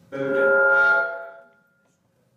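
A chime: a ringing tone of several pitches that starts suddenly, holds for about a second and then fades away.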